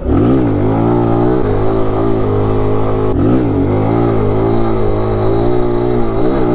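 Mini motorcycle's small single-cylinder engine revving up sharply, then held at high revs, with a brief drop in pitch and a quick climb back about three seconds in, as the bike is ridden up onto its back wheel in a wheelie.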